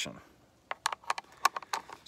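Steel bolt of an M1903 Springfield bolt-action rifle being handled and slid back into its receiver: a quick, uneven run of light metallic clicks and ticks starting a little over half a second in.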